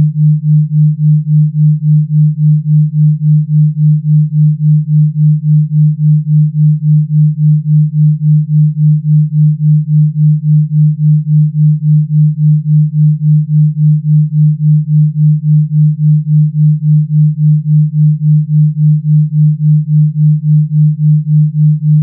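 A single low, steady sine tone near 150 Hz, pulsing evenly in loudness a few times a second. It is a Rife frequency tone.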